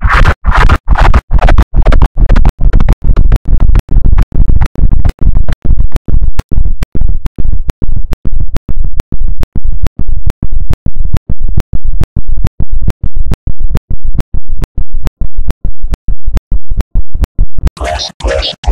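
Loud, distorted, bass-heavy audio chopped into a rapid stutter of about three short pulses a second, each cut clicking. After the first few seconds the higher tones fade and mostly a deep repeated boom remains.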